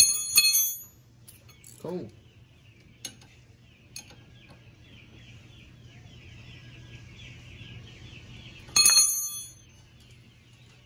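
Steel hand tools clinking against metal on a golf cart's front suspension: two ringing clinks right at the start, a few light clicks in the middle, and another loud ringing clink near the end.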